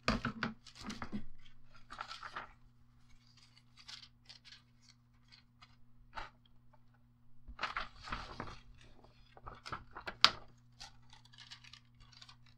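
Thin metallic deco foil and paper rustling and crinkling in the hands in irregular bursts, with the foil being peeled off a laminated paper tag near the end and a sharp click about ten seconds in. A faint steady low hum runs underneath.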